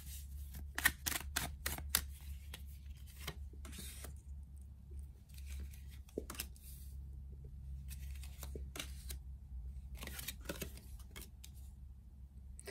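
A deck of tarot cards being shuffled by hand, with quick clicking of the cards in the first two seconds, then scattered taps and flicks as cards are drawn and laid one by one on a wooden table.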